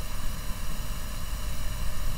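Steady low rumble with a faint even hiss: background noise picked up between sentences, with no distinct event.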